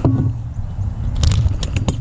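Handling noise on a bass boat's deck: a short knock at the start, then several quick clicks and knocks in the second half as a bass is handled on a measuring board, over a steady low rumble.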